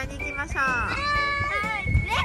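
A young girl's high, excited voice with sweeping pitch, over background music that holds one long steady note from about half a second in.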